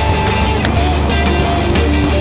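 A rock band playing live: a drum kit struck steadily, with sharp hits cutting through, under held electric guitar notes.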